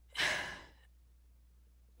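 A woman's breath, heard once and lasting about half a second, as the speaker takes a breath between phrases.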